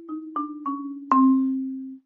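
Marimba bars struck with yarn mallets: a short run of notes stepping down in pitch, ending about a second in on middle C, which is struck hardest and left to ring.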